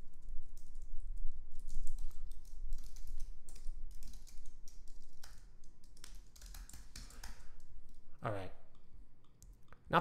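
Typing on a computer keyboard: quick, irregular keystrokes while code is being edited, stopping about seven and a half seconds in. A short voiced hum follows about eight seconds in.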